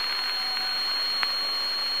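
Background hiss of an old archival broadcast recording, with a constant high-pitched whistle tone running through it, heard in a pause between spoken numbers. There is one faint tick a little after the first second.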